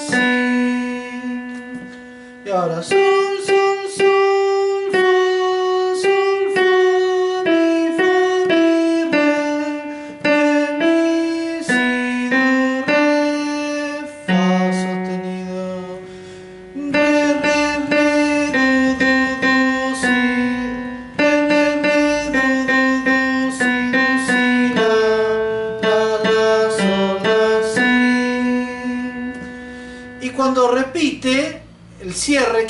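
Yamaha digital piano playing a slow bolero melody with the right hand, one note at a time, each note left to ring and fade, in phrases separated by brief pauses.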